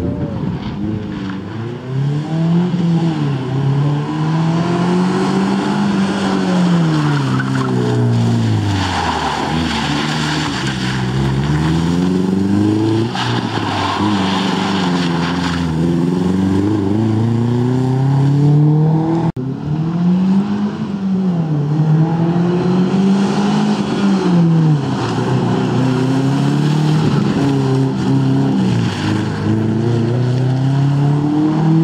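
First-generation Subaru Impreza rally car's flat-four engine revving up and falling back again and again as the car accelerates and brakes through tight turns, with tyre squeal in the corners.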